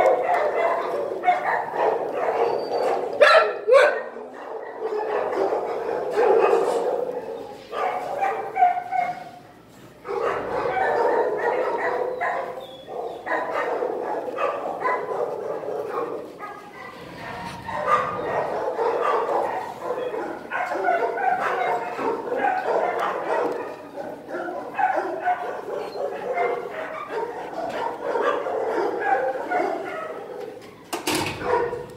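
Dogs barking over one another in shelter kennels, a continuous din with a few short lulls.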